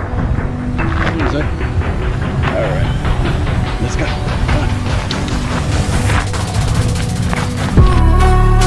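Rubbing and handling noise from a dog-mounted action camera as a hand pets and rubs the dog's fur beside it: a dense low rumble with scraping and rustling. Background music starts loudly near the end.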